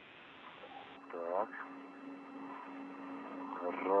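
Spacewalk air-to-ground radio loop: a thin hiss with a steady low hum from about a second in, a brief faint voice, and a man starting to speak near the end.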